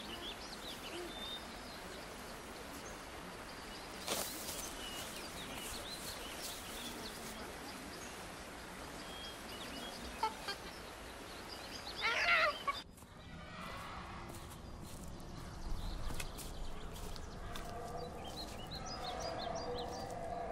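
Jungle ambience: a steady background hiss with scattered short bird chirps. A loud, brief animal call comes about twelve seconds in, then the background cuts abruptly to a quieter one.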